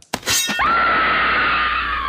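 Segment-transition sound effect: a short crash-like burst, then one long high-pitched scream that slides slowly down in pitch.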